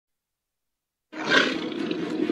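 A dog's low, rough growl from an animated bull terrier, starting about a second in and continuing.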